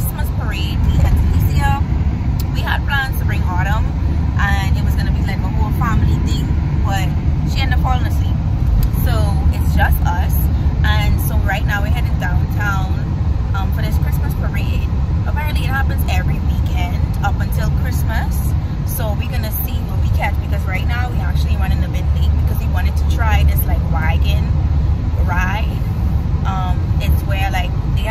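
A woman talking over the steady low rumble of a car's cabin while driving, with the air running.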